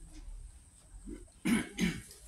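Two short coughs in quick succession, about a second and a half in, against quiet room noise.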